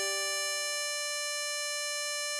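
Tremolo harmonica holding one long steady draw note on hole 10.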